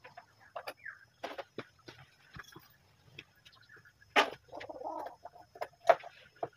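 A chicken clucking, mixed with a few sharp knocks and rustles of bags being handled; the clucking is clearest a little past the middle.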